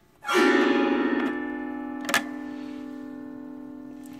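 Tokai Chroma Harp autoharp: a chord strummed across the strings about a quarter second in, then ringing on and slowly fading, with a short tick about two seconds in.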